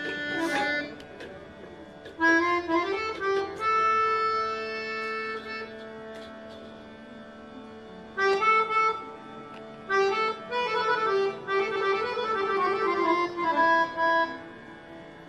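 Indian harmonium playing a tappa in raag Kafi: phrases of quick ornamented runs alternate with long-held notes over a quieter sustained drone.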